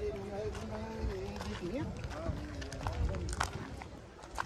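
Faint background voices of people talking at a distance, with a few scattered clicks.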